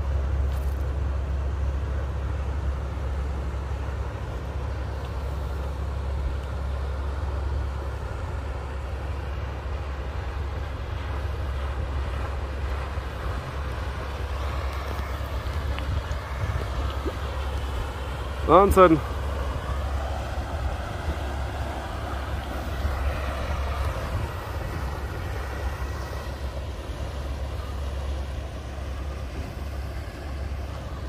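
Inland cargo barge's diesel engine droning low and steady as the vessel passes close by. A little past halfway, a brief loud cry that bends up and down in pitch cuts in over it.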